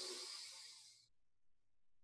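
A person taking a long, deep breath in, the airy inhale fading out about a second in, followed by near silence.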